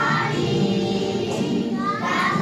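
A group of young children singing together as a choir, steady and continuous.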